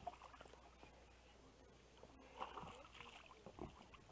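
Near silence, with a few faint, brief splashes from a hooked smallmouth bass thrashing at the water's surface, about halfway through and again near the end.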